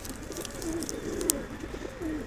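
Domestic pigeons cooing softly: low, wavering calls, several overlapping.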